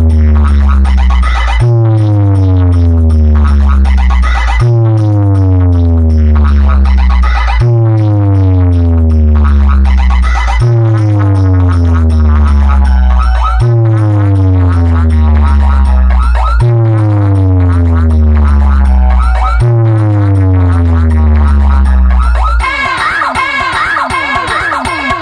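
A large DJ loudspeaker box stack playing a bass test track: a loud bass sweep falling in pitch, restarting about every three seconds. Near the end it gives way to warbling electronic tones.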